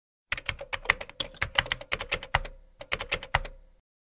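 Computer keyboard typing: a quick, irregular run of key clicks, with a short pause about two and a half seconds in, stopping just before the end.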